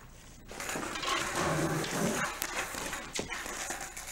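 Skateboard wheels rolling over concrete, a rough rumble that starts about half a second in, with a couple of sharp clacks of the board.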